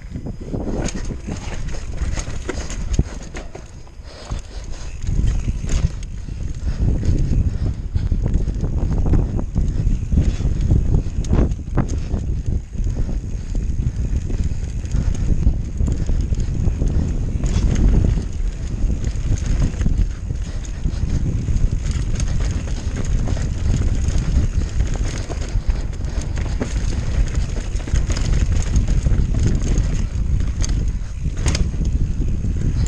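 Mountain bike riding fast down rough singletrack: tyre noise, knocks and rattles of the bike over rocks and turf, under heavy wind rumble on the microphone. The sound dips briefly about four seconds in, then runs on at a steady level.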